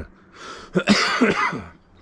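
A man coughing, a short run of rough coughs close together about three quarters of a second in: the residual cough still lingering weeks after COVID.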